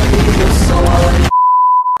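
A loud explosion sound effect, then a single steady high beep tone starting a little past halfway and lasting just over half a second before cutting off sharply.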